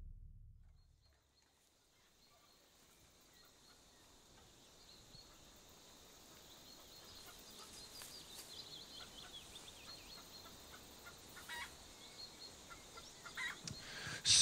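Near silence: the tail of a drum-heavy music cue dies away in the first second, then faint room tone with faint high bird chirps and a couple of soft clicks near the end.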